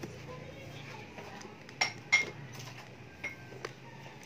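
Metal kitchenware clinking: two sharp clinks about two seconds in, a third of a second apart, then a few lighter ticks.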